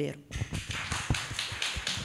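Audience applauding: a dense patter of many hands clapping that starts just after the last words of a speech.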